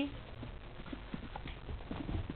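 Soft, irregular thumps and scuffs of a kitten's paws and body on carpet as it scrambles and pounces while playing.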